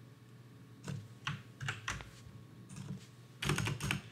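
Computer keyboard keystrokes: a few separate key presses, then a quick run of several keys near the end.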